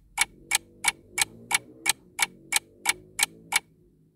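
A clock ticking: sharp, evenly spaced ticks, about three a second, that stop shortly before the end.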